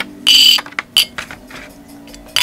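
Chocolate coins in foil and plastic casings dropped and set onto a ceramic plate: a loud clattering clink with a brief ringing tone about a quarter second in, a sharp single clink about a second in, and a few lighter taps as they are arranged.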